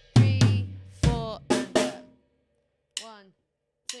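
Acoustic drum kit played in a short slow phrase: about six strokes in the first two seconds, mixing deep bass drum and tom hits with snare and cymbal, then it stops. It is the 2/4 bar and tom-to-snare fill of a graded drum part.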